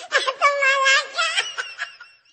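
High-pitched laughter: one long, wavering laugh that fades away near the end.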